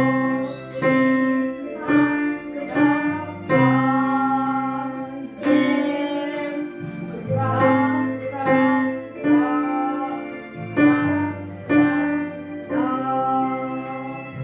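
A child playing a simple beginner's piece on a digital piano, one note or chord at a time at a slow, even pace, each note decaying before the next. A woman's voice sings along with the melody.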